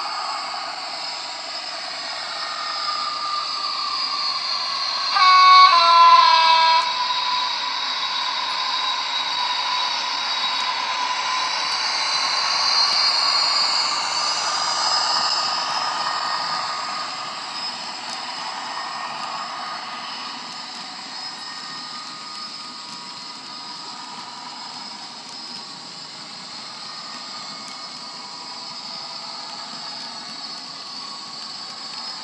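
Hornby HM7000 DCC sound decoder playing a Class 56 diesel's engine sound through a model locomotive's small speaker, with a loud two-tone horn, a high note then a lower one, about five seconds in. The engine note climbs around twelve to fifteen seconds in, then dies away and stays quieter.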